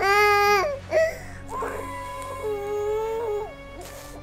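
A baby crying: a loud wail at the start, a short catch of breath about a second in, then a longer, quieter wail that drops in pitch before trailing off. A low steady musical drone runs underneath.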